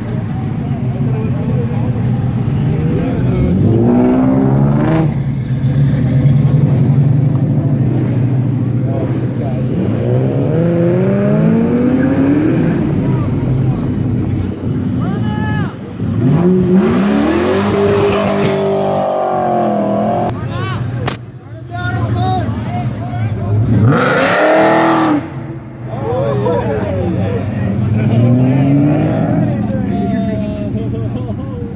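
Several car engines revving and accelerating away one after another, each a rising run of engine pitch, the loudest two about halfway through and near three-quarters in, over a steady engine idle close by.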